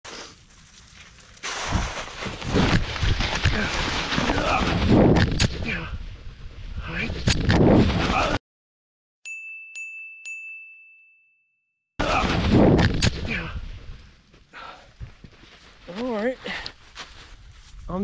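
A person scrambling and falling on a snowy, brushy slope, loud on a handheld camera's microphone: crunching snow, rustling brush and clothing, and several sharp thuds. About eight seconds in the sound cuts off to silence and an added ding rings once as a single held high tone for about a second and a half. Then the scrambling noise returns, with a wavering voice near the end.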